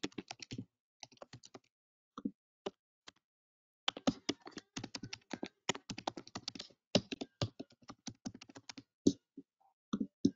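Typing on a computer keyboard. A few short runs of key clicks in the first three seconds, then a fast, dense run of keystrokes from about four seconds in to near the end.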